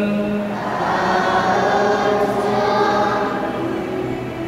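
Church choir singing a slow sacred piece, the voices holding long notes.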